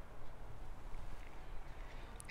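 Faint, steady low rumble on a small handheld camera's built-in microphone, with no distinct clicks.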